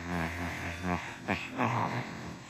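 Synthesized AI text-to-speech voice of Peter Griffin making garbled, unintelligible vocal sounds while attempting to sing: a held low note for about the first second, then two short vocal bursts.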